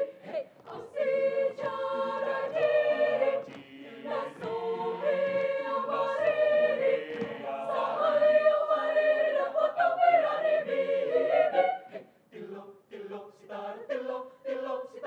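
Mixed choir singing a cappella in close harmony, holding chords from phrase to phrase. Near the end it breaks into shorter, choppier rhythmic chanting.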